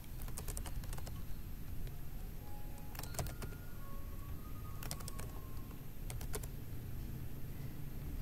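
Computer keyboard typing: short bursts of keystrokes in about four clusters, with pauses between them, over a steady low background hum.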